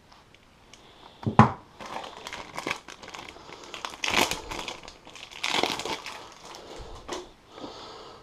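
Thin clear plastic bag crinkling and rustling in irregular surges as it is cut open with a folding knife and pulled apart by hand. A single sharp click comes about a second and a half in.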